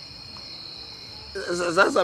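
Crickets trilling steadily in one continuous high-pitched tone. A man's voice cuts in about a second and a half in.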